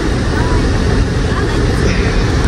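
Steady low rumble of road and engine noise inside the cabin of an SUV moving at speed.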